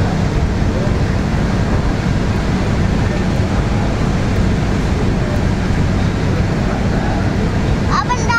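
Steady low drone of a car ferry's engines while it is underway, under an even rush of noise.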